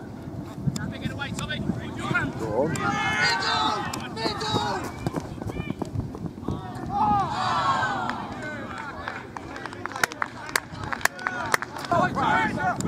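Footballers shouting calls to each other on the pitch during open play, in two bursts of shouts, with several sharp knocks near the end.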